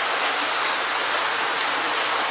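Steady rush of running water, even and unbroken, with no other events standing out.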